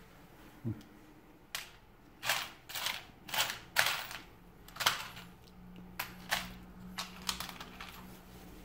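Small screws and metal fittings clicking and rattling in a plastic compartment organizer box as a gloved hand rummages through them: about a dozen short, sharp, irregular clicks.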